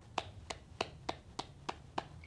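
A woman clapping her hands in an even rhythm, about three claps a second. It is a respectful clapping greeting to elders.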